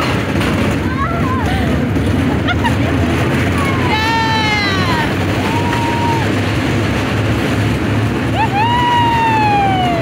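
Riders screaming on a moving roller coaster: several drawn-out, wavering screams, the longest near the end, over a steady rush of wind and ride noise.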